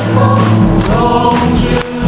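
Church choir singing a gospel song, voices holding sustained notes, with a brief drop between phrases near the end.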